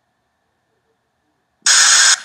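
Near silence, then a sudden loud hissing noise starts near the end.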